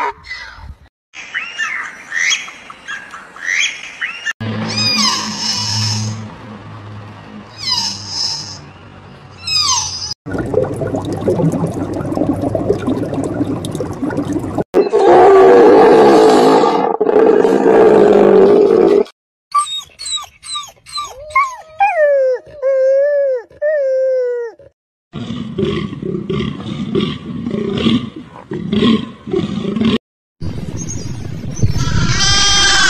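A string of separate animal calls, cut one after another: a donkey braying at the start, then several unidentified calls. An American bison bellowing is the loudest, from about 15 to 19 seconds in.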